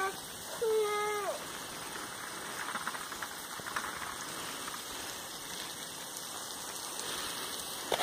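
A short, high, slightly falling call about a second in, then faint rustling and a few small crackles from a pig rooting in dry straw and dirt.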